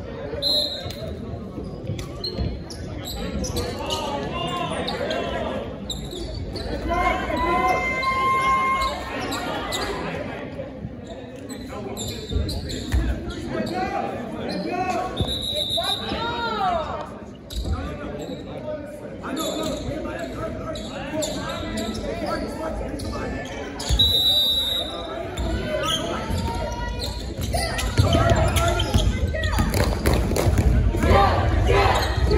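Basketball game in a large, echoing gym: a ball bouncing on the hardwood court under a steady mix of players' and spectators' voices. A short, high referee's whistle blows three times, once near the start, once about halfway and once a little past two-thirds of the way through.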